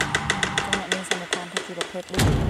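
A rapid, even series of sharp clicks, about eight a second, fading toward the end.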